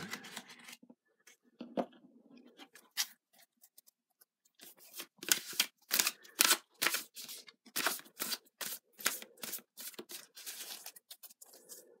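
Playing-card-sized oracle and tarot cards being handled: an irregular run of sharp snaps and rustles, sparse at first and coming thick and fast in the second half.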